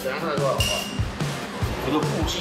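Chest compressions on a CPR training manikin: a dull thump with each press, about two a second, at the steady pace of a compression drill.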